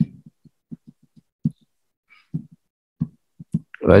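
About a dozen soft, short, low thumps at irregular spacing, most in the first second and a half, from a stylus tapping and stroking on a drawing tablet while handwriting.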